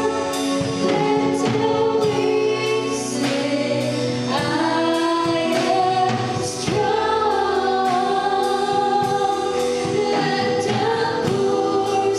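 Gospel worship song: voices singing over a band with a steady beat.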